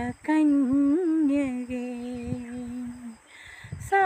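A solo woman's voice singing a Malayalam Christian devotional song without accompaniment. She sings a short phrase, holds one long, steady note for nearly three seconds, breaks briefly for breath near the end, then starts the next phrase.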